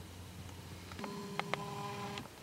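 A faint low hum, then about halfway through a steady held tone, like a beep, that lasts about a second, with a couple of faint ticks during it.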